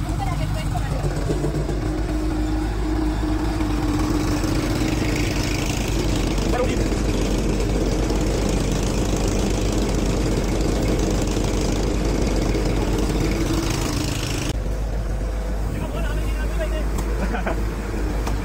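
Tractor-powered groundnut thresher running steadily: the tractor engine's drone with the thresher drum's whirring hum under it as plants are fed in. The sound turns duller about fourteen seconds in.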